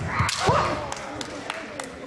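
A kendo strike: the sharp crack of a bamboo shinai landing, with a heavy thud, then a fighter's loud shout rising in pitch about half a second in. Several more short clacks of shinai follow.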